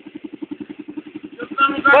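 Honda NX350 Sahara's single-cylinder engine running at low revs with a steady, rapid, even beat. A man's shout rises over it near the end.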